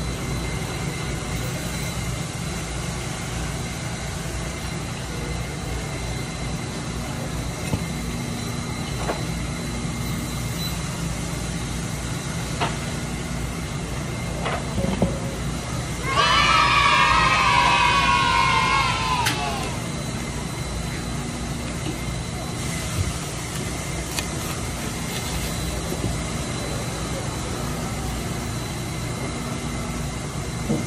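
Steady low mechanical hum with a few faint clicks of a knife working through a tuna head. About sixteen seconds in, a loud high squeal sounds for about three seconds, falling in pitch.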